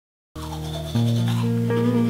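Toothbrush scrubbing on teeth, starting about a third of a second in under music of sustained low notes that get louder about a second in.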